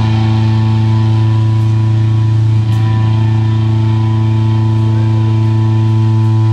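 A rock band's amplified guitars and bass holding one long sustained chord, ringing steadily and loud with no new notes struck.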